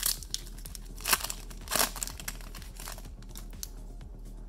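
Foil Pokémon booster pack being torn open and crinkled in the hands: several short ripping, crackling bursts over the first three seconds, then only light handling.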